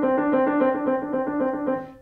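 Grand piano playing a rapid trill in the middle range, starting on B and then alternating D and C, measured out in even thirty-second notes. The notes ring loudly at first and die away near the end.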